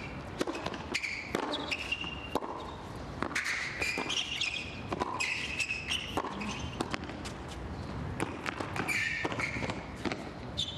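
Tennis rally on a hard court: repeated racket strikes and ball bounces, with short high squeaks in between.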